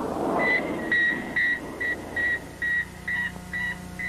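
Electronic sound-effect beeps standing for an orbiting satellite's radio signal: a short steady high tone pulsed about two and a half times a second, after a brief warbling sound at the start. A low hum comes in about halfway through.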